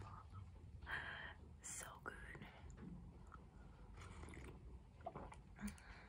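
Faint sips of warm chicken broth from a bowl, with soft breathy exhales between them: a few short, quiet sounds spread through.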